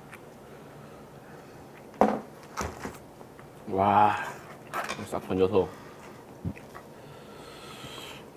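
A sharp clink of tableware about two seconds in, followed by a few lighter taps, between short stretches of a man's voice.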